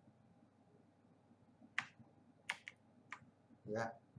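Four faint, sharp computer-keyboard key presses in the second half, spaced unevenly.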